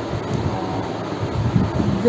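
Steady low rumble and hiss of background noise, with no distinct event.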